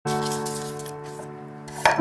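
A cleaver blade scraping the skin off a carrot as the carrot is rolled against the edge on a wooden board, under a sustained, slowly fading musical note. A sharp knock comes just before the end.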